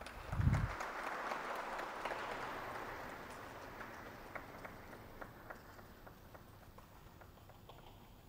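An audience applauding in a hall: dense clapping that tails off to scattered single claps near the end. A brief low thump comes about half a second in, and it is the loudest sound.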